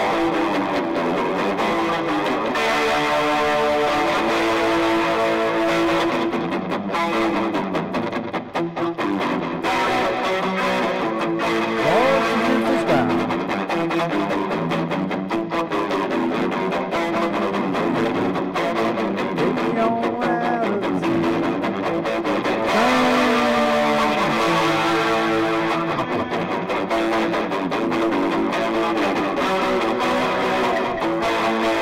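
Telecaster-style solid-body electric guitar played through an amp, strummed bar chords with a few bent notes.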